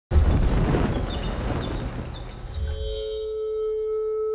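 Trailer sound design: a sudden loud low hit with a rushing noise that fades over about two and a half seconds, leaving a single held high note that rings on steadily.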